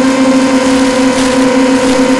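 Steady, loud buzzing drone of a QAV250 FPV quadcopter's 2000 kV brushless motors and 5x3 propellers holding cruise throttle. It is heard through the analogue video downlink, so a heavy hiss of radio static runs under it.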